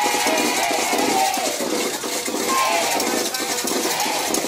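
Street marching band playing: a steady rhythm of drum and metallic percussion strikes over the voices of a large crowd.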